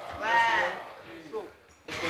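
A person's voice making a short, drawn-out wordless call, like a bleat, lasting about half a second near the start. Softer voices follow, then a brief lull that ends in an abrupt jump in sound.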